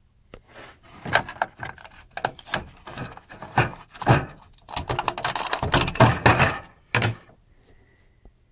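Handling noise from the metal chassis and modules of a Wandel & Goltermann RME-4 receiver: an irregular run of clicks, knocks and rattles of metal and plastic parts. It comes in two dense clusters and ends with a sharp knock about seven seconds in.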